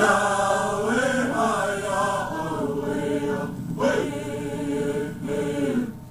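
Background music: voices singing a chant in held notes, stopping near the end.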